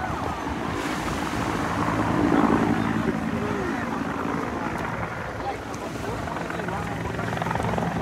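Helicopter flying low overhead with a steady drone, mixed with the chatter of a crowd of voices.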